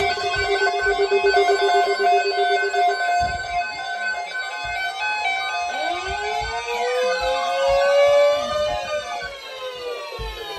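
Several weather alert radios sounding a tornado watch alarm at once. Pulsing steady tones at several pitches run for about three seconds, and rising and falling siren-like sweeps come in from about six seconds in.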